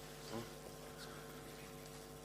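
Faint steady electrical hum from the hall's sound system while the microphones are open, with a brief faint voice about a third of a second in.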